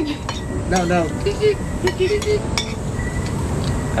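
Spoons and cutlery clinking against plates and a cooking pot while people eat: a scatter of short, sharp clicks.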